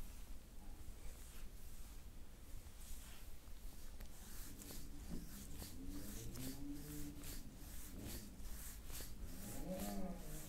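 Faint motorcycle engine revving, its pitch rising and falling several times, from about halfway through. Before that there is only low room tone.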